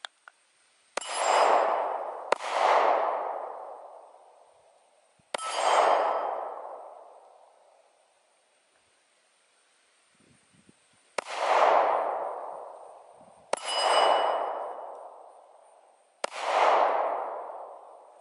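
Six single pistol shots fired slowly and deliberately, unevenly spaced, with the longest pause between the third and fourth. Each shot is a sharp crack that trails off over a second or two.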